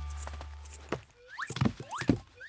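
The tail of the song's music fading out, then a few short knocks and quick rising cartoon 'whoop' sound effects.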